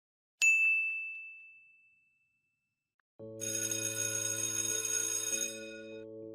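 A single bright ding, like a small bell struck once, that rings and fades away over about a second and a half. After a second of silence, background music comes in as a low sustained chord with a high shimmering layer.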